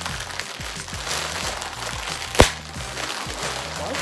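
Clear plastic poly bag crinkling and crackling as it is pulled and wrestled open by hand, with one sharp snap of the plastic about two and a half seconds in. The bag is hard to open.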